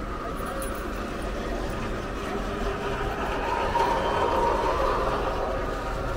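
Road traffic: a steady hum of vehicles, swelling as one passes by about four seconds in.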